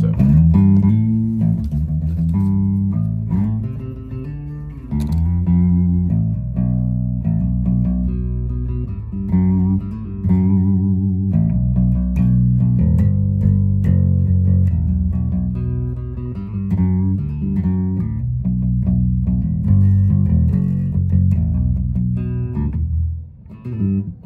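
Gretsch G2220 Junior Jet short-scale electric bass picked with a plectrum through a Fender Rumble 200 bass combo amp: a continuous run of loud, sustained bass notes and lines, with a brief gap just before the end.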